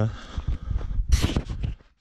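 Footsteps on a dirt bush trail with handling knocks from a handheld camera, and one short, sharp breath about a second in.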